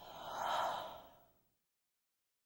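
A whooshing transition sound effect: an airy noise swell that rises to a peak about half a second in and fades away by about a second and a half.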